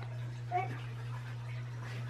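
A young child's brief high-pitched squeak about half a second in, over a steady low hum.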